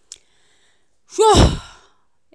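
A woman sighs once, about a second in: a single breathy vocal sound that rises and then falls in pitch, preceded by a faint click near the start.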